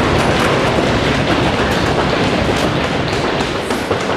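Audience applauding: dense clapping that stops near the end.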